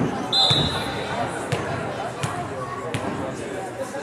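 Volleyball rally in a gym: the ball is struck several times, sharp smacks roughly a second apart, over players' voices. A brief high-pitched tone sounds about a third of a second in.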